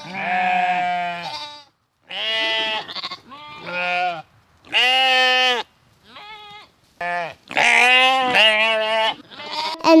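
Children imitating sheep, a string of drawn-out, wavering "baa" bleats about one a second.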